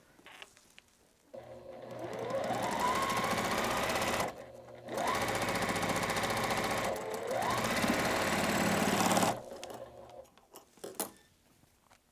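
Juki sewing machine stitching a patchwork seam: it starts about a second in with a rising whine as it speeds up, stops briefly about a third of the way through, starts again, dips and speeds up once more, then stops about three quarters of the way through. A few light clicks follow.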